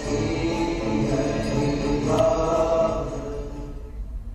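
Hindu devotional chanting with music, held sung lines that fade out near the end.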